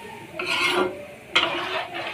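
Metal spoon stirring curry in a metal kadai, scraping against the pan in two strokes, the second starting with a sharp scrape.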